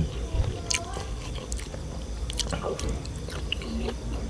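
A person chewing food close to the microphone, with scattered short mouth clicks and smacks.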